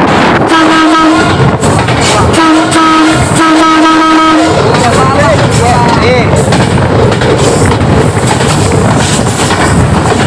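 Train horn sounding three steady blasts, the last two close together, over the loud running rumble of a train on the track.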